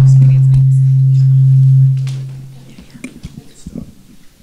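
Loud steady low hum through the PA while a microphone is handed over, fading away about two seconds in. Faint microphone handling clicks and rustles follow.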